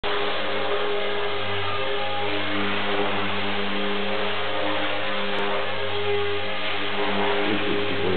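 Align T-Rex 450 electric RC helicopter in flight: a steady whine from the brushless motor and drivetrain, with the hum of the spinning rotor. Its pitch shifts slightly as the helicopter manoeuvres.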